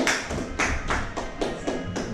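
Hand clapping from a small group, about four claps a second, fading away, over quieter background music.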